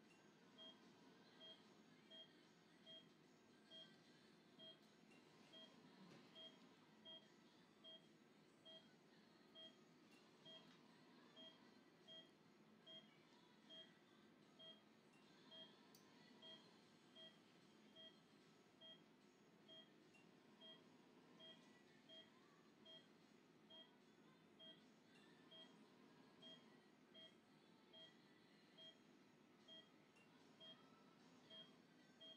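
Anaesthesia patient monitor giving faint, evenly spaced pulse beeps, a little more than one a second, which track the anaesthetised dog's heartbeat. A low, steady operating-room hum runs underneath.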